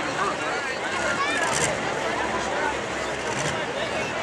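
Spectator chatter over a light pro stock pulling tractor's diesel engine running at idle.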